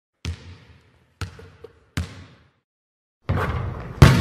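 A basketball bouncing three times, each bounce a sharp hit with a short ringing tail, the gaps between bounces shortening. About three seconds in, a loud, steady rush of noise begins.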